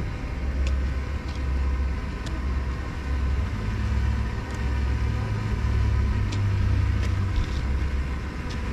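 An engine running with a low rumble and a steady hum. Its pitch sits a little higher for a few seconds in the middle.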